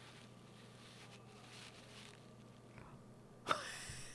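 Quiet room tone with a faint steady hum and a few faint soft rustles, then about three and a half seconds in a short, sudden breathy vocal sound from a woman, falling in pitch.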